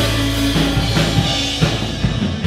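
Live worship band playing an instrumental passage: drum-kit hits over held low bass notes, with electric guitar and keyboard.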